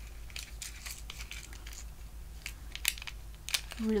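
Small cardboard box and clear plastic blister tray being handled and opened by hand: irregular crinkling and clicking of paper and plastic, with two sharper clicks about three seconds in and again half a second later.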